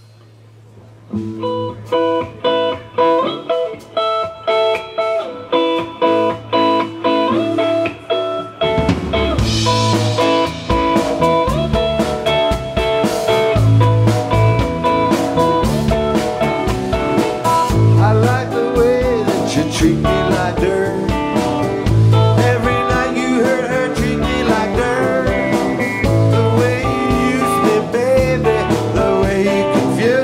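Live rock band. Just after a moment of steady amplifier hum, an electric guitar opens with a chord riff struck about twice a second. About nine seconds in, the drums and bass come in with the full band, and a male lead vocal is singing in the second half.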